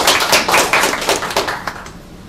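A small audience applauding, many hands clapping irregularly; the clapping thins out and stops just before the end.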